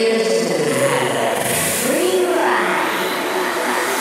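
Beatless breakdown in a psytrance track: layered synth pads and swooping, pitch-gliding synth effects with a hissing sweep, and no kick drum.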